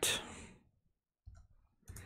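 A few faint clicks of typing on a computer keyboard.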